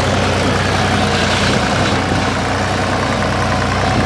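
An engine running steadily at idle, a loud, even hum.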